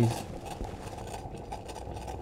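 Water just short of the boil, at about 90 °C, being heated electrically: a faint steady hiss with light crackling as bubbles begin to form.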